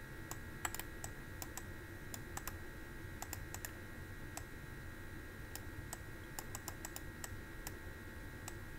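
Light, irregular clicks and taps, a few a second, over a faint steady high-pitched whine.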